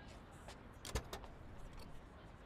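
Faint car sounds from the anime's soundtrack: a limousine door knocking shut, with a couple of sharp clicks about a second in.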